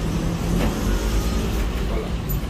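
An engine running steadily: a low, even hum.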